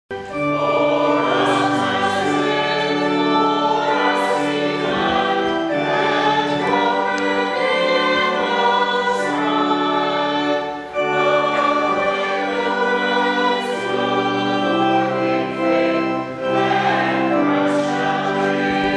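A group of voices singing a hymn together in slow, held chords, with a short pause between phrases about two-thirds of the way through.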